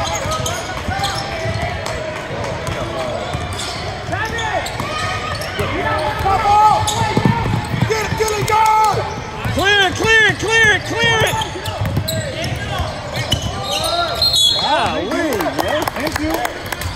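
Basketball game on a hardwood gym court: a ball bouncing and sneakers squeaking on the floor, with a quick run of about five squeaks about ten seconds in.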